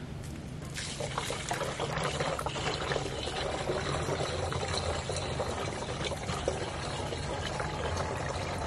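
Water pouring from a plastic jerry can into the filler opening of a plastic pump-sprayer tank, a steady pour that starts about a second in.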